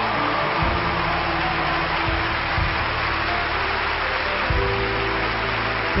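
Instrumental introduction of a slow soul ballad: held chords and low bass notes changing every second or so over a steady hiss, leading into the first sung word at the very end.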